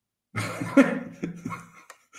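A man's short laugh: a few broken, breathy bursts lasting about a second and a half, starting just after a brief silence.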